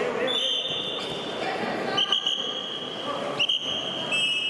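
Wrestling referee's whistle blown in three blasts, the last one held, over the chatter of a sports hall.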